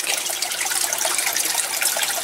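Water running and trickling in an aquaponic setup: a steady, even splashing with no pauses.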